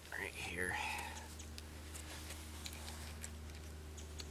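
A brief muttered sound of voice about half a second in, then faint scattered ticks and rustles of gloved hands working a wire snare onto a fir limb, over a steady low hum.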